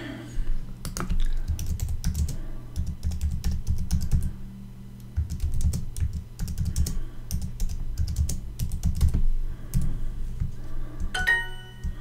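Typing on a computer keyboard: irregular runs of keystrokes with short pauses between words. Near the end comes a short electronic chime of a few steady tones, Duolingo's sound for a correct answer.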